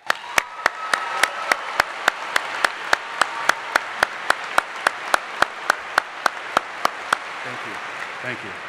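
Crowd applauding, starting suddenly and slowly fading. Over it, one loud clapper close by claps evenly at about three to four claps a second until about seven seconds in.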